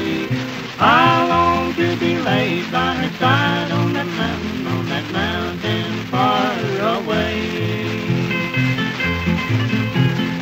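Instrumental break on a 1945 78 rpm country duet record: guitars picking the melody with upward-bending notes over a steady bass line, no singing.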